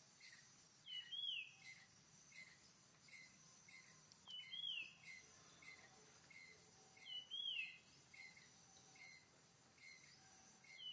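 Faint forest birdsong: one bird repeats a whistled call that rises then falls, three times, about every three seconds, with shorter chirps between. A steady high insect drone runs underneath.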